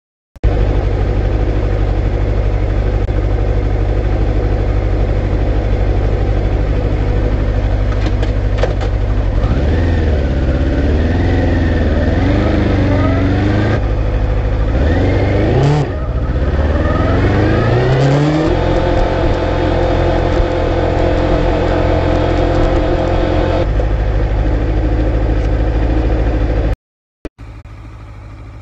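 Honda CBR600 sport bike's inline-four engine accelerating through the gears, its pitch rising and dropping several times between about ten and eighteen seconds in, then running at a steady pitch while cruising. The sound cuts out briefly near the end.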